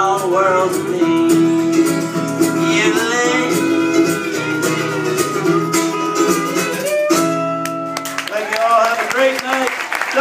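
Acoustic old-time duo music: plucked guitar with singing. A held chord changes about seven to eight seconds in.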